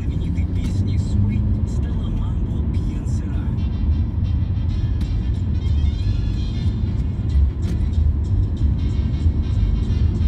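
Car interior on the move: a steady low rumble of engine and road noise heard inside the cabin.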